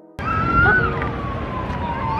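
Emergency vehicle siren in a long, slow downward wail, one steady tone gliding lower over about two seconds, over city street noise. It starts suddenly a moment in.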